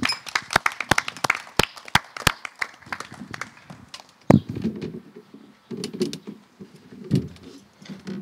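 Irregular sharp clicks and taps for about four seconds, with one louder knock a little after four seconds in. Low, muffled voices follow.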